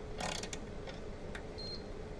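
Steady hum of an idling CNC milling machine, with a short noisy burst near the start, a few faint clicks, and a brief high beep a little after the middle.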